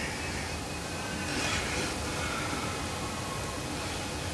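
Faint metal-on-metal scraping and squeaking, drawn out and sliding downward in pitch, as a hex key is worked in a fitting on a Churchill Redman shaper's gearbox, over a steady background hum.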